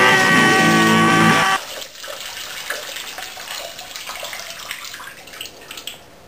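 A person urinating into a water-filled dirt pit: a thin stream splashing and trickling on the water surface, stopping near the end. Before that, a song's held final chord cuts off abruptly about a second and a half in.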